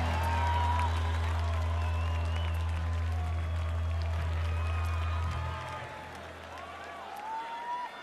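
A live rock band's sustained low note holds and then dies away about five and a half seconds in, leaving a large outdoor crowd cheering and applauding.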